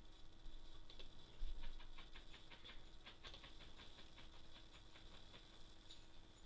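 Faint, rapid, irregular clicks of a computer mouse, several a second, as applications are opened one after another.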